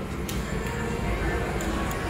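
Casino floor background: slot machine music and jingles over a steady hum of distant voices, with a few faint clicks.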